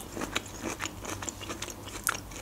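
Close-miked chewing of sushi: a mouthful worked with many small, wet, irregular mouth clicks.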